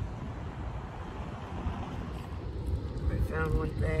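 Steady low outdoor rumble, with a voice starting to speak about three seconds in.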